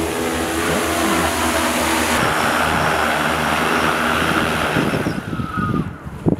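TopXGun F10 four-rotor agricultural spray drone's propellers and motors humming steadily as it descends to land on automatic return-to-home. In the last second or so the hum breaks up and fades as the drone touches down.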